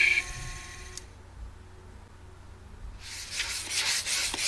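India stone rubbed back and forth on a diamond flattening plate to flatten its face: a rough, noisy rubbing in repeated strokes that starts about three seconds in, after a short quiet lull.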